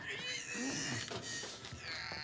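Quiet, high, wavering cat-like cries from a human voice: a short one just after the start and a stronger one near the end.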